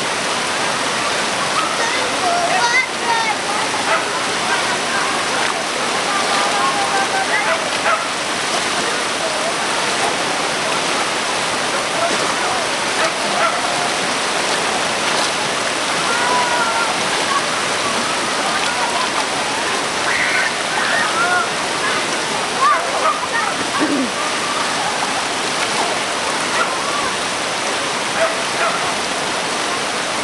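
Muddy floodwater of a river in flash flood rushing past steadily.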